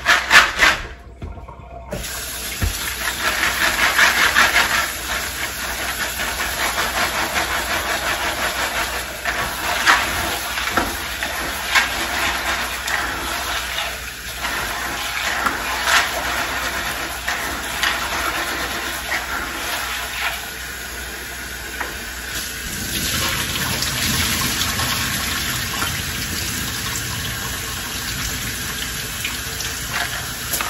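Kitchen faucet running into a bowl of dried red kidney beans as they are washed by hand, the water stream steady and starting about two seconds in, with scattered clicks of beans being stirred.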